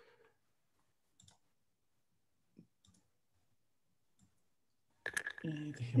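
Near silence broken by four faint, scattered computer mouse clicks. A man's voice comes in near the end.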